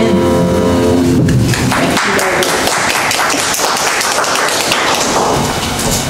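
The keyboard prelude's last held chord ends about a second in. For the rest, a few seconds of dense tapping and thumping follow.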